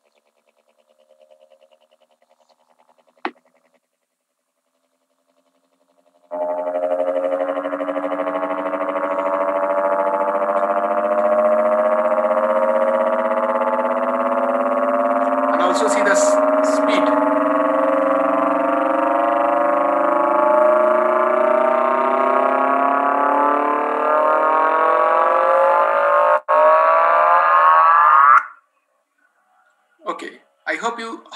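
Sonified gravitational-wave signal of a small black hole spiralling into a much larger one: a buzzing tone of many harmonics comes in about six seconds in and rises steadily in pitch and loudness, climbing faster near the end. It then cuts off suddenly as the small black hole crosses the larger one's event horizon. A single click sounds about three seconds in.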